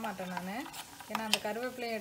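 A voice talking over ghee bubbling in a steel saucepan as it is stirred with a steel spoon, with a sharp spoon clink against the pan about one and a half seconds in. The ghee is at its final stage of cooking, with curry leaves added.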